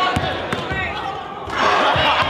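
A basketball being dribbled on a hardwood gym floor, a few low bounces, under people talking in the hall; the voices and hall noise grow louder about a second and a half in.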